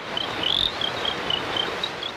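Forest ambience: a steady hiss with a small animal chirping high and regularly, about four times a second, one chirp louder than the rest about half a second in.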